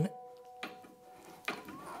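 Hand screwdriver turning a screw down through a metal mounting plate, faint, with one sharp click about one and a half seconds in. A faint steady hum runs under the first part and stops shortly before the click.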